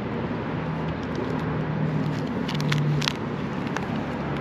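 Steady low mechanical hum, like an idling vehicle or a running machine, under an even outdoor background noise. A few light clicks and rustles of plastic card-binder sleeves being handled come about two and a half to three seconds in.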